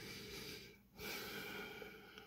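A man breathing close to the microphone: two breaths, the first in the opening moments and the second starting about a second in.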